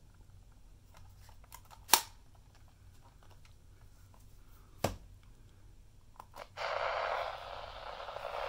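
Sharp clicks from handling the plastic body of a National Radicame C-R3 radio/camera, two louder ones about three seconds apart. Near the end its AM radio is switched on and gives a steady hiss of static through its small speaker.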